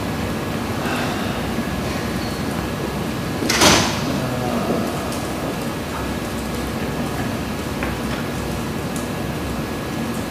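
Steady room noise with a faint constant whine, broken once about three and a half seconds in by a short, loud noise lasting under half a second.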